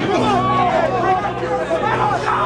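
Several voices talking and shouting over one another, over a steady low tone.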